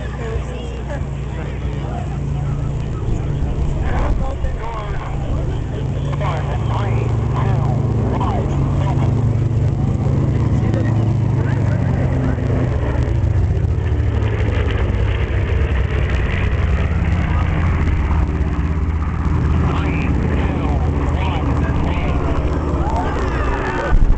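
Two B-25 Mitchell bombers' radial piston engines droning low as the planes fly past, growing louder over the first half and then holding steady.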